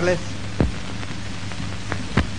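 Steady hiss and low hum of an old film soundtrack, with a sharp click about half a second in and another near the end.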